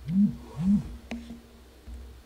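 Two short, low hums from a man's voice, each rising and falling in pitch, about half a second apart, then a single click.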